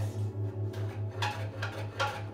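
A low humming tone pulsing about five times a second, with a few faint scraping strokes of a hand tool worked over the end of a wooden post.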